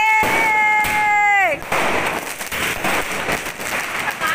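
Diwali fireworks and firecrackers crackling and popping in a dense, continuous stream. For about the first second and a half a long high-pitched held note sounds over them, then drops away in pitch.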